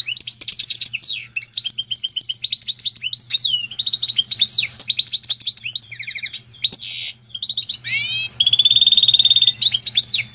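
Goldfinch × canary hybrid singing a long, varied song of rapid twittering phrases, chirps and rising trills. About eight seconds in it holds a long, steady buzzing trill, the loudest part.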